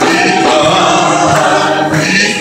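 Gospel singing in church: a group of voices singing together, loud and unbroken.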